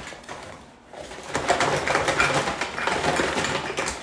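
Brown paper gift bag rustling and crinkling as hands dig through it: a dense crackle that starts about a second in.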